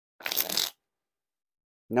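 A deck of Theory11 Red Monarchs playing cards being riffle-shuffled: one quick riffle, about half a second long, of the card edges flicking down into each other, starting about a quarter second in.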